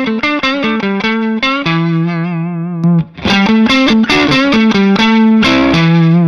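Redhouse S-style electric guitar played through a Palmer DREI amp: a picked single-note phrase, first with the BearFoot Sea Blue EQ bypassed for the clean sound, then repeated about three seconds in with the pedal switched on, its treble and bass boost set to 10 o'clock, sounding slightly louder and fuller.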